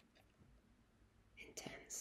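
Near silence, then a short soft whisper from a woman near the end.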